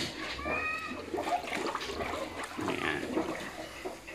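A sow in a farrowing crate slurping water from a metal trough. Several short, high, gliding animal cries come near the start.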